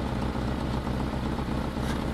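A vehicle engine idling, a steady low rumble.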